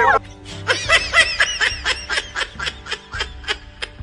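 Rapid, evenly paced laughter, about five 'ha' sounds a second, fading toward the end, over background music with held notes.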